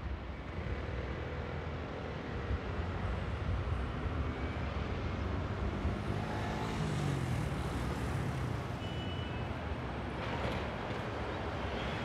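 City road traffic: a steady rumble of engines and tyres from passing cars and city buses, with one engine note falling in pitch as a vehicle goes by about seven seconds in.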